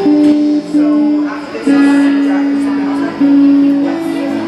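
A song on acoustic guitar, with a voice singing long held notes in phrases separated by short breaths.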